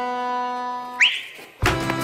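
Accordion music holding a chord, broken off about halfway by a short, loud rising whistle-like sound effect. Near the end, louder and fuller music with bass comes in.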